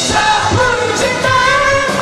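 Live rock band playing: distorted electric guitars and a steady drum beat, with a lead vocal singing over them.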